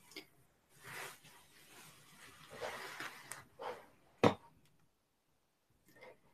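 Close handling of small glass beads on a needle and thread: soft rustling as the beadwork is worked, with light clinks and one sharp click a little after four seconds in.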